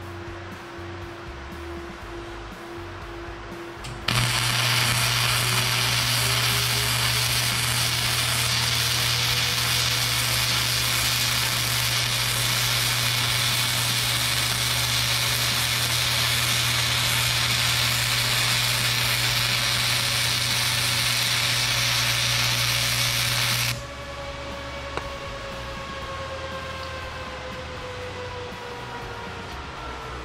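Lincoln Power MIG 260 welding arc running .045 self-shielded flux-core wire, laying a bead on quarter-inch steel plate. The arc runs steadily with a low hum under it for about twenty seconds. It strikes about four seconds in and cuts off abruptly.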